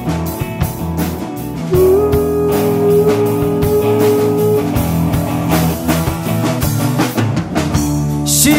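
Live rock band playing an instrumental passage without vocals: drum kit, bass, strummed acoustic guitar and electric guitar, with one long held note in the middle.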